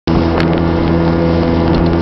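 Motorboat engine running steadily under way at an even pitch, with rushing water and wind noise from the hull crossing choppy water.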